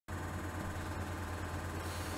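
Steady low hum with an even background hiss: room tone.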